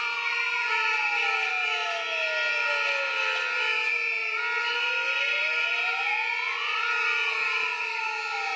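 Steady shrill whistling from many demonstrators' whistles. Over it, a siren wails slowly, falling for about four seconds, then rising again and starting to fall near the end.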